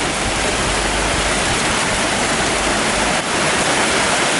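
Heavy rain pouring down, a steady loud hiss.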